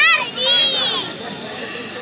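A child's high-pitched call, rising and falling once, over crowd voices.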